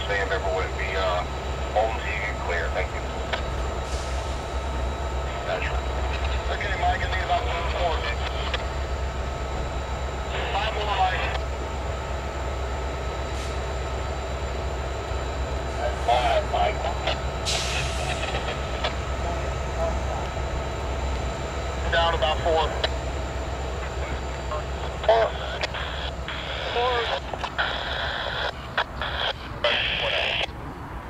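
CSX EMD diesel-electric locomotive idling while stopped, a steady low rumble with a faint steady hum above it.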